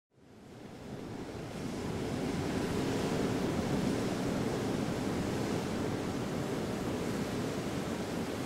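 Ocean surf, a steady wash of waves that fades in from silence over the first couple of seconds.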